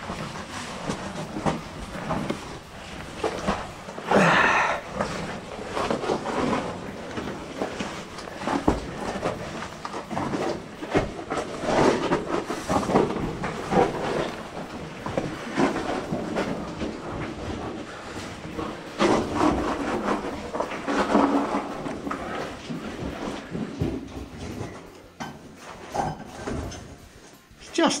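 Footsteps scuffing and splashing over wet rock and shallow water inside a cave, with irregular knocks and scrapes. Brief indistinct voices come and go, the clearest about four seconds in.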